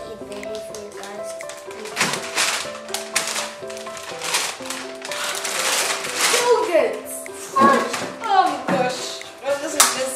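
Background music playing under children's excited voices and squeals, with a paper bag crackling as it is opened.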